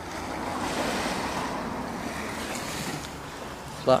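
Small waves on a calm sea washing gently onto the shore, a steady wash of noise, with wind on the microphone.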